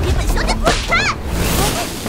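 Sound effects of whip cracks and whooshes, with a high cry gliding up and down about a second in.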